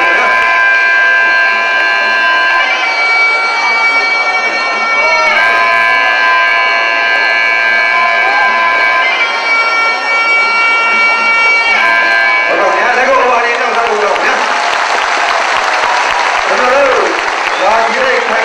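A double-reed shawm of the ringside Lethwei music, the Burmese hne, plays long held notes that step to a new pitch every few seconds. About two-thirds of the way through it stops, and a loud crowd shouting and cheering takes over.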